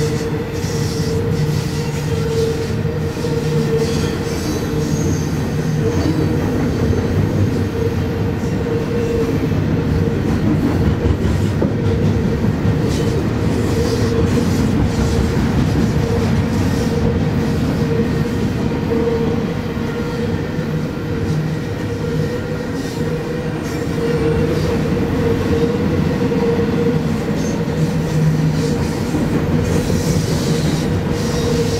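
Double-stack intermodal freight cars rolling past: a steady, loud rumble of steel wheels on rail, with a constant hum-like tone running through it.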